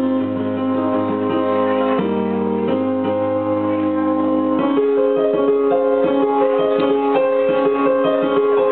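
Electric keyboard playing held chords that change every second or two. Just past halfway the low bass drops out, and the playing turns to shorter, repeated notes.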